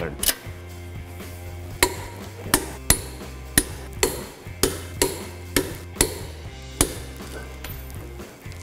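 Click-type torque wrench on wheel lug nuts, giving a sharp metallic click about every half second to second as each nut reaches its set torque of 140 foot-pounds. Soft background music runs underneath.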